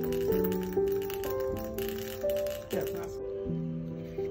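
Instrumental background music of held notes, with a dense rattle of small homeopathic pills poured from a metal jug into plastic vials. The rattle stops about three seconds in.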